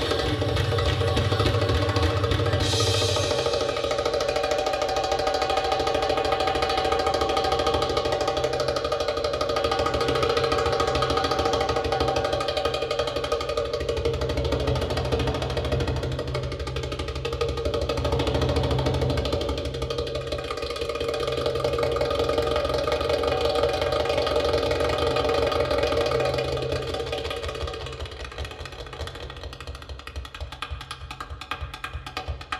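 Arabic belly-dance drum-solo music: rapid goblet-drum (tabla/darbuka) patterns over held melodic tones, dropping in level near the end.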